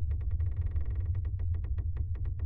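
Horror film score: a low, steady drone with a rapid, even ticking pulse over it.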